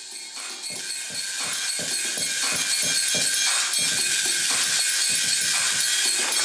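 Electronic music from an Ableton Live session, fading in: a steady beat of about three hits a second with bright, hissy high percussion on top.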